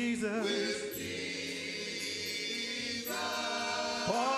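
Church choir singing long held notes with keyboard accompaniment; a new chord comes in about three seconds in.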